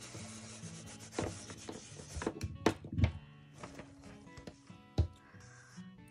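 Soft background music over the rubbing of a Cricut EasyPress Mini heat press being slid around on a paper cover sheet laid over a football, with a few sharp knocks from handling, the loudest about five seconds in.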